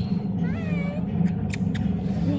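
A child's short meow-like call, rising then falling in pitch, about half a second in, over a steady low hum, with a few faint clicks near the end.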